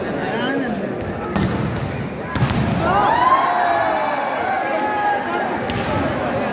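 Volleyball struck hard twice, sharp smacks about a second and a half and two and a half seconds in, over the steady chatter of a large crowd in an indoor hall. After the second hit the crowd breaks into loud shouting and cheering.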